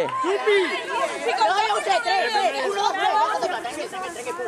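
A group of young people talking and calling out over one another, several voices overlapping at once.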